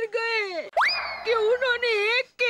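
A woman's voice speaking in a drawn-out, sing-song way. Her voice is cut less than a second in by a comic sound effect: a quick upward glide that holds as a tone, sags slightly and fades out within about a second, before her voice returns.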